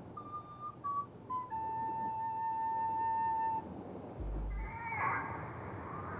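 Background music on a flute: a few short notes stepping down in pitch, then one long held note. A short, very low tone comes a little after four seconds, and wavering, warbling flute-like notes follow near the end.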